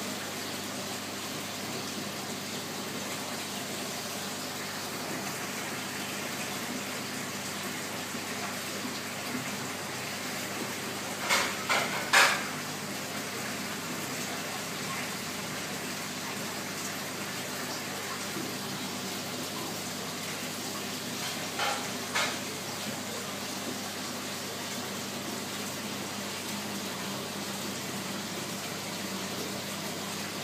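Aquarium filter running: a steady water trickle with a low hum. Short sharp knocks come in a cluster about twelve seconds in and twice more around twenty-two seconds, and are the loudest sounds.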